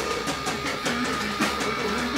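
Rock band playing live: electric guitar over a drum kit, with drum hits coming about four to five times a second.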